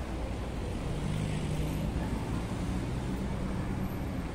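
City street traffic: a passing motor vehicle's engine hums low, strengthening about a second in, over a steady rumble of road noise.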